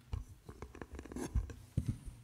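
Handling noise close to the lectern microphone: papers and prayer books rustling and shuffled on the wooden reading desk, with irregular clicks and a few low thumps, the loudest about three-quarters of the way through.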